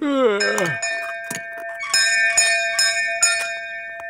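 A castle doorbell on a pull-rope is rung over and over in quick succession, its ringing carrying on and fading out: an impatient caller at the door. It opens with a voice sliding down in pitch in a yawn.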